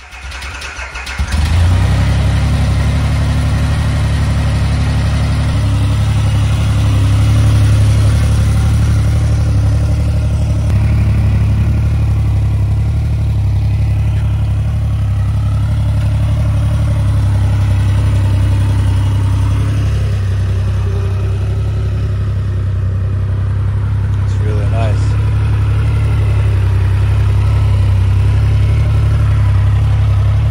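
Triumph Rocket 3 R's 2,458 cc inline three-cylinder engine coming up about a second in, then running at a steady idle.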